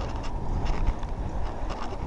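Wind rumbling on a handlebar-mounted action camera's microphone as a mountain bike rolls over rough asphalt, with scattered small rattling clicks from the bike.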